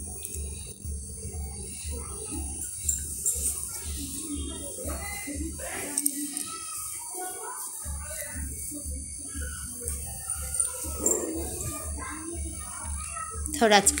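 Faint background voices and music with a low, regular beat, about two to three a second. The beat drops out for about a second midway.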